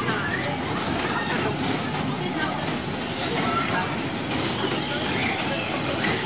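Steady rumbling noise of a rotating amusement ride running, with faint voices now and then.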